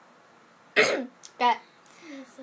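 A person coughs once, sharply, about three-quarters of a second in. A short voiced sound follows about half a second later.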